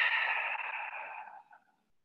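A woman's long, deep exhale, breathed out deliberately. It fades away about a second and a half in.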